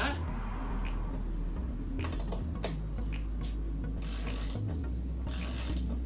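Short metallic clicks and light clatter of a hand ratchet and socket as a 15 mm nut is threaded onto a wiper-arm post, with quick runs of ratchet clicking about four and five and a half seconds in.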